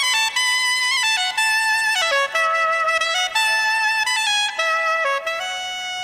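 Soprano saxophone playing a solo melody, one note at a time, with held notes that step up and down in pitch.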